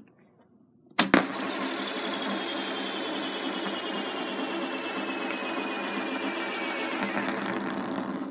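A small green plastic tube flicked into a spin lying flat on a desk: a sharp knock about a second in, then a steady whirring rattle against the desk with a whine that falls slowly in pitch as the spin slows, dying away near the end.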